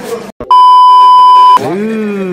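A loud, steady 1 kHz censor bleep lasting about a second, edited in over speech to mask a word; the audio drops out for a split second just before it.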